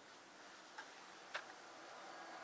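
Near silence: faint room hiss with two short clicks about half a second apart, the second louder.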